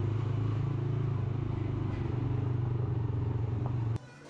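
A vehicle engine running steadily while moving along at an even speed: a low, constant drone that cuts off suddenly at the end.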